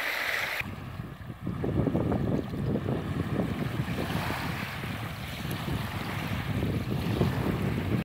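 Wind buffeting the phone's microphone in uneven gusts, with a low rumble. Under a second in, a steady hiss stops abruptly.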